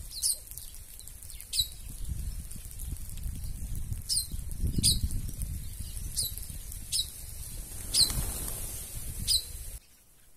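A feeding flock of red-cowled cardinals and other small ground birds: sharp, short, descending chirps about once a second over a low rustle of fluttering wings. It all cuts off suddenly just before the end.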